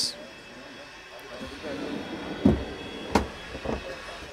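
Two short knocks, the second a little sharper, from a caravan's pull-out cool box drawer and cupboard being handled, over the low murmur of voices in a busy exhibition hall.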